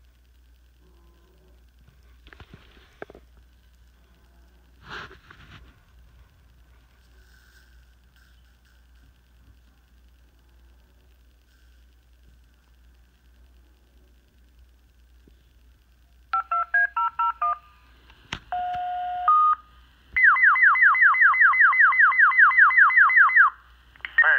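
Fire department dispatch tone-out over a radio: after a long quiet stretch, short stepped paging tones start about sixteen seconds in, then a steady tone, then a loud, fast warbling alert tone for about three seconds that cuts off just before the dispatcher speaks.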